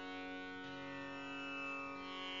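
Tanpura drone ringing steadily, a dense set of sustained string pitches with no voice over it. A lower note joins in about half a second in.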